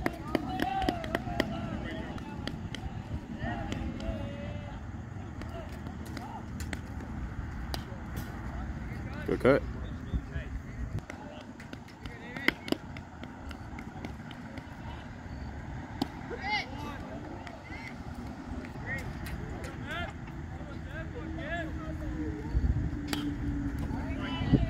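Youth baseball game ambience: scattered voices of players and spectators calling out, over a low steady rumble, with a few sharp knocks, the loudest about nine and a half seconds in. A low steady hum comes in near the end.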